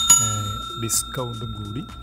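Bell chime sound effect for the tap on an animated subscribe-button notification-bell icon: a single strike that rings on steadily in a few high tones, over a voice.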